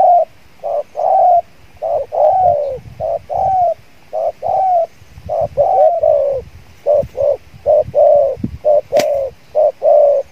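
Spotted doves cooing: a long run of short coo notes in quick clusters, some falling in pitch, with a sharp click about nine seconds in.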